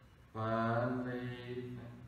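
A man's voice holding one long, low, steady tone for about a second and a half, like a chanted or drawn-out syllable.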